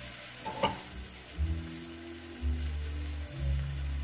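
Onions and tomatoes sizzling in a pan over high heat, with a short tap a little over half a second in.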